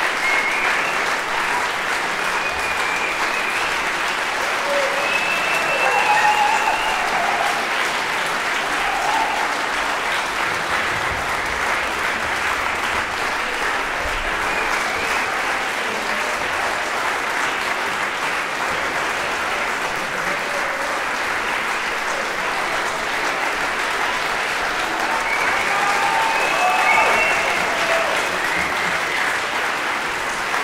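Concert audience applauding steadily, swelling slightly about six seconds in and again near the end, with a few voices rising over the clapping.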